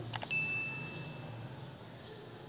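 A couple of quick clicks, then a single bright bell ding that rings steadily for about a second: the sound effect of a subscribe-button and notification-bell animation.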